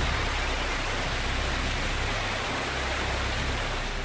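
Steamboat Geyser in eruption: a steady, unbroken rush of water and steam jetting into the air.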